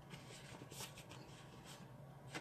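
Faint, short scraping strokes of a bone folder rubbing along the fold of a cardstock card base, several in the first second and one more near the end.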